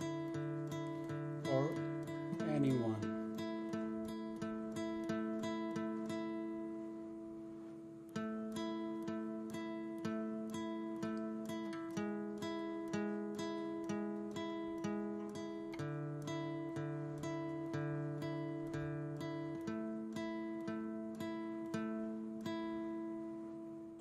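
Steel-string acoustic guitar playing a slow alternate-picked two-note riff in steady even notes: a high note on the G string (9th fret) stays the same while the bass note on the D string steps down from the 7th fret to the 6th fret to the open D and back up. The pattern breaks off briefly about eight seconds in and starts again.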